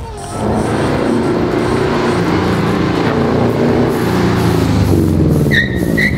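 The 2-litre non-turbo EJ20 flat-four engine of a 1999 Subaru Impreza GC8, running and revving, its pitch rising and falling. A brief high tone sounds near the end.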